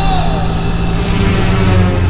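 Auto-rickshaw engine running with a steady low rumble, the rickshaw rolling on after its brakes have failed.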